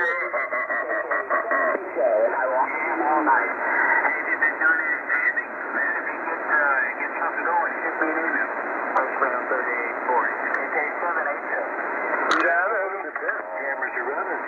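Tecsun PL-880 shortwave receiver playing a lower-sideband voice transmission on 3840 kHz: thin, narrow-sounding voices over a hiss of static. A sharp click comes at the start and another about twelve seconds in.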